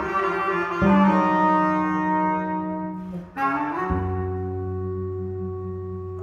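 Bass clarinet and electric bass in a free improvisation, playing long held notes. The notes shift a little under a second in, break off briefly a little past three seconds, then resume with a steady low bass note under the clarinet.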